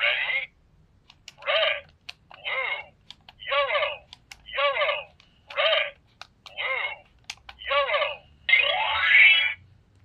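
Handheld electronic cube memory game sounding its sequence: short electronic tones about once a second, with faint clicks between them and a longer tone near the end.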